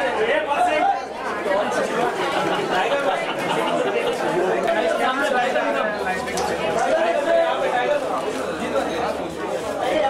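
Crowd chatter: many people talking over one another at once, steady throughout, with no single voice standing out.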